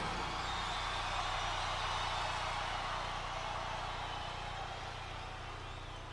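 Large arena crowd cheering, a steady roar that slowly dies down, over a low steady hum from the stage sound system.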